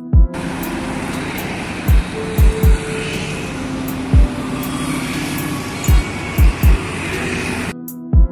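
Steady road-traffic noise from passing cars and motorbikes, laid under background music with regular kick-drum beats; the traffic sound comes in just after the start and cuts off suddenly near the end.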